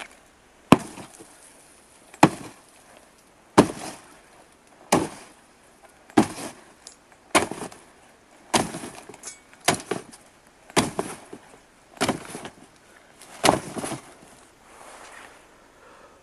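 A sword striking a coffin lid again and again: about eleven heavy blows a little over a second apart, each with a short ringing tail.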